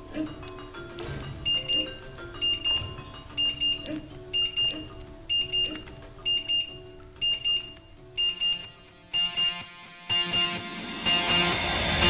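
An electronic kitchen timer beeping, a quick high double beep about once a second, over soft background music that swells near the end.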